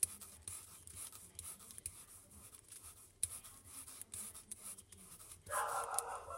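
Foam sponge brayer rolling ink over cardstock: a faint, soft rubbing with a few light ticks. Near the end a brief, louder sound comes in.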